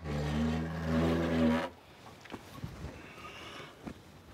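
Old wooden plank door creaking open on its hinges: a loud, low, steady-pitched groan lasting under two seconds, then a few faint knocks and scuffs.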